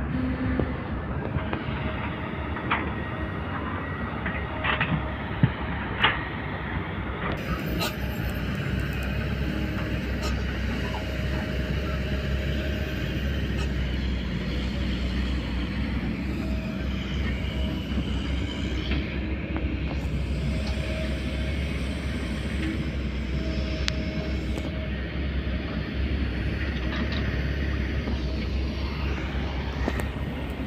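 Steady low rumble of diesel earthmoving machinery, an excavator and dump trucks working at a distance. Two sharp knocks about a second apart stand out in the first quarter.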